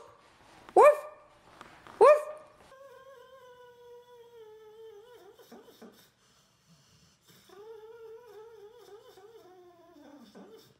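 A sleeping dog whining: two long, high whines that slowly fall in pitch, with a short pause between them. Before them come two short, sharply rising cries about a second apart, the loudest sounds here.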